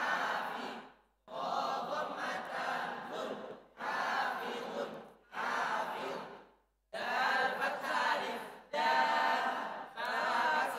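A group of voices reciting Arabic words together in unison as a spelling drill. The recitation comes in about six phrases of one to two seconds each, with short breaks between them.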